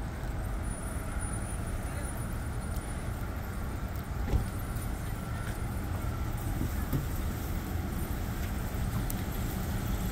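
Steady low rumble of car traffic in a busy parking lot, with cars moving and idling close by, and a single faint knock about four seconds in.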